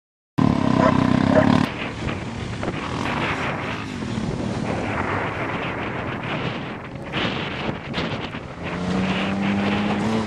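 1994 Dodge Caravan minivan's engine running as it drives along a dirt track, with wind buffeting the microphone. The opening second is louder, and near the end a steady engine note comes up and rises slightly as the van accelerates toward the jump.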